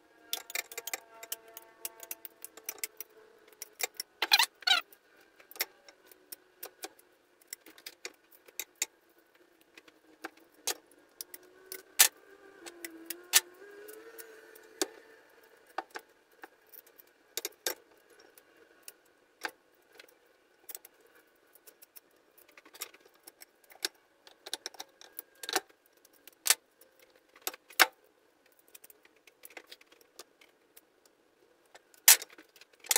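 Old strings being cut out of a tennis racquet with pliers and pulled from the frame: many sharp, irregular snaps and clicks.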